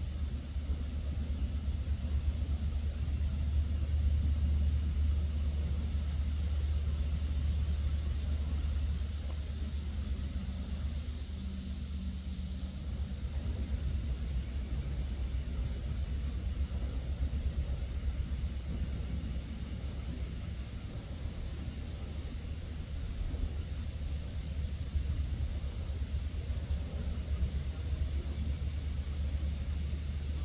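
A low, steady rumble with a faint outdoor hiss above it, swelling slightly in the first few seconds and easing off later.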